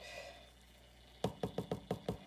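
A quick run of about six light taps or knocks, roughly five a second, starting a little past a second in.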